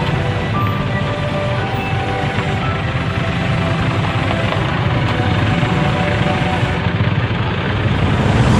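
Motor vehicles in a convoy passing close by, a steady engine and road rumble, with background music playing over it.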